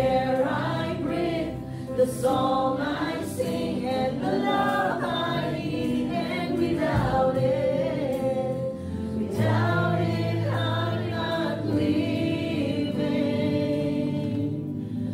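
Live church worship band: several voices singing a slow worship song together, over keyboard, guitar and drums.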